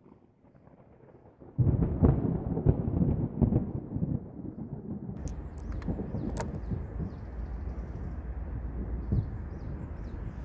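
A deep, thunder-like rumble starts suddenly about one and a half seconds in and dies down by about four seconds. After that a steady low hum runs on, with a few sharp clicks and one short knock near the end.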